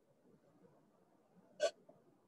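Faint background noise from an open microphone, broken about one and a half seconds in by a single short, sharp sound.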